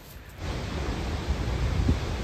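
Wind blowing across the microphone: a steady rushing noise with a heavy low rumble, starting about half a second in.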